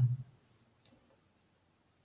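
A single short click about a second in, in an otherwise quiet pause.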